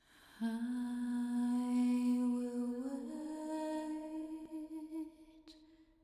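A woman's unaccompanied voice holding a long wordless note, then stepping up to a second, higher note about three seconds in. The note fades out near the end.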